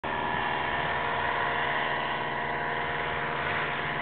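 Paramotor engine buzzing steadily as the powered paraglider comes in to land, a constant drone of several held tones.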